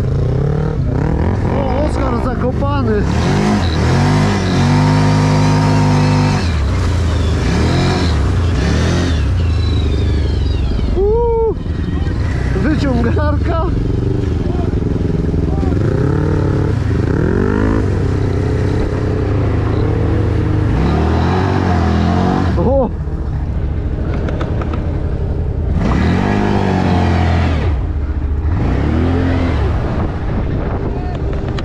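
Quad (ATV) engine heard from the rider's seat, revving up and easing off again and again as it is ridden over rutted sand and mud, its pitch rising and falling many times. The revs dip sharply about eleven seconds in and again a little after twenty seconds.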